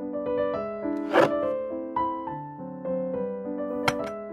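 Gentle background piano music playing a stepping melody. A brief rustling noise stands out about a second in, and a sharp click comes just before the end.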